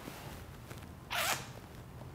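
A man's single short sniff, a sharp breath in through the nose, about a second in, over faint room tone.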